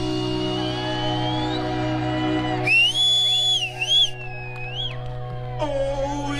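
Live blues-rock band with an electric guitar lead through Marshall amps: sustained high notes bent up and down in pitch, with vibrato, the brightest about halfway through, over a held low bass note.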